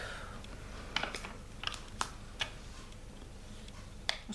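Small sharp clicks of square resin diamond-painting drills being tapped down onto the adhesive canvas with a plastic drill pen, about seven irregular taps in the first half, then fewer.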